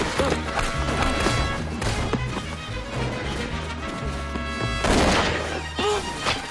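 Film score music with a steady low pulse, over action sound effects: a horse neighing near the start and a loud crash about five seconds in.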